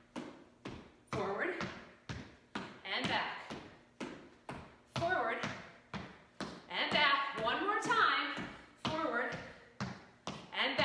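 Footsteps in sneakers stepping and tapping on a hardwood floor, many short sharp taps in an uneven rhythm, with a woman's voice breaking in several times between them, loudest about seven to eight seconds in.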